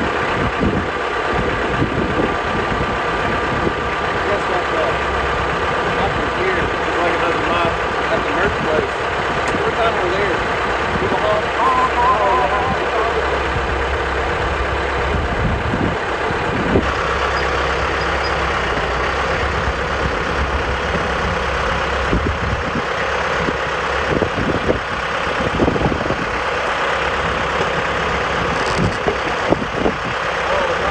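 TYM 5835R compact tractor's diesel engine idling steadily, its note changing about seventeen seconds in. The tractor starts and runs fine but will not drive.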